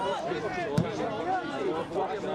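Several men's voices shouting and calling over one another on a football pitch. A little under a second in comes one sharp thud, typical of a football being kicked.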